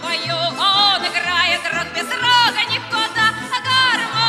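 A song: a high female voice singing with wide vibrato over instrumental accompaniment with a bouncing bass line.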